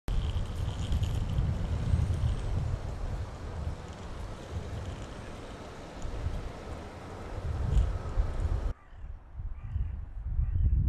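Outdoor street ambience: a steady low traffic rumble with a few faint clicks, cutting off abruptly near the end and giving way to a quieter background.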